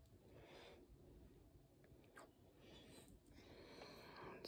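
Near silence: room tone, with one faint click about two seconds in.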